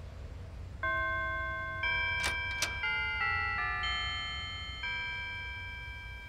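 A house doorbell chiming a tune of several ringing notes, each starting about half a second to a second after the last and fading slowly. Two sharp clicks come a little after two seconds in.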